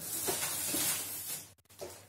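Rustling and rummaging as items are handled and a product is pulled out, a dry, hissing rustle lasting about a second and a half that then dies away.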